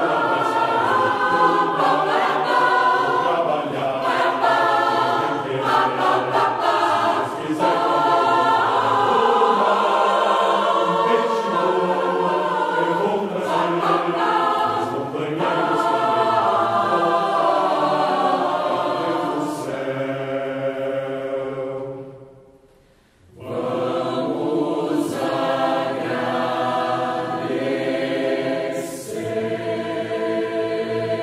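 Mixed choir of men's and women's voices singing in sustained, held chords. The sound dies away a little past two-thirds of the way through and the choir comes back in moments later.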